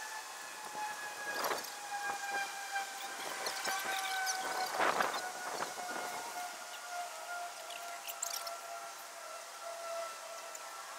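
Rustling and a couple of crackling knocks, loudest about five seconds in, as a wooden swarm box is handled among tree branches. Over this runs a steady whining tone that slowly falls in pitch, from an unidentified distant source.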